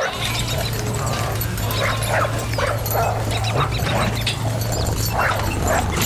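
A dog barking and yipping in a run of short calls over a steady low hum.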